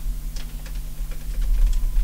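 A few light clicks of a flat-screen TV's panel buttons being pressed to step through the input sources, over a steady low hum.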